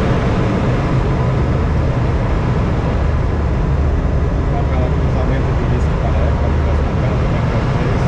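Steady rush of airflow around a glider in flight, heard from inside the closed cockpit, with a constant low rumble beneath it.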